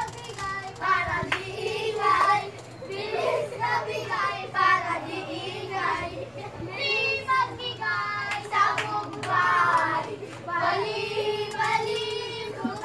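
High-pitched voices singing and calling out in short phrases, some notes held briefly, over a steady low hum.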